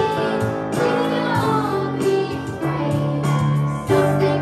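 A group of young children singing together in unison over instrumental accompaniment with sustained low notes.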